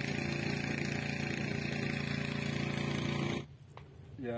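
A small engine running steadily at an even speed, cutting off suddenly about three and a half seconds in.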